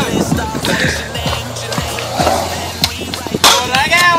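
Skateboard wheels rolling on a concrete skatepark bowl, with sharp clacks of the board, under hip-hop music with a steady bass beat that stops near the end.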